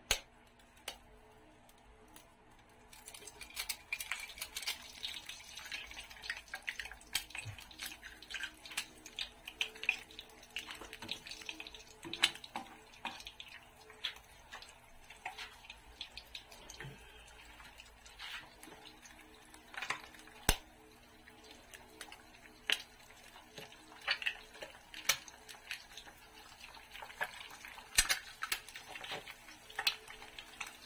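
An egg cracked at the start, then frying in hot oil in a nonstick pan: a steady crackling sizzle, beginning about three seconds in, dotted with irregular sharp pops and spatters.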